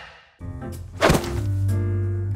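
A cardboard box set down with a single heavy thunk about a second in, over gentle background music that starts just before it.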